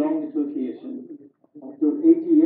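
A man talking, heard over a video call, with a short pause about two thirds of the way through.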